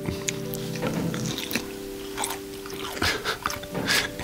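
Wet chewing and biting mouth sounds of a person eating fish, with scattered short clicks, over soft background music with long held notes.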